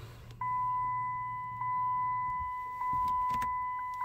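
Dodge Challenger SRT8 dashboard warning chime sounding after the ignition is switched to run. It is a steady beep-like tone that repeats about every second, three times, each one fading slightly. A faint low hum sits under the first half.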